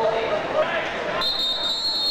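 Swim referee's whistle: one long, high blast that starts suddenly about a second in and lasts just over a second, the signal for swimmers to step onto the starting blocks. Crowd chatter runs under it.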